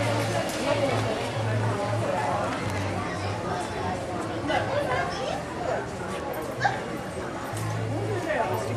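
Voices of people talking nearby over music, with low bass notes coming and going.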